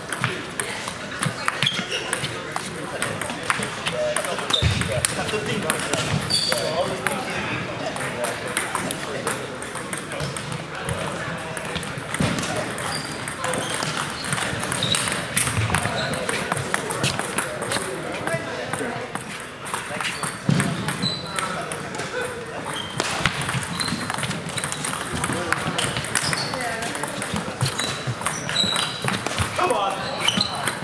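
Table tennis rallies: the ball clicking off bats and the table in quick exchanges, over a background of voices.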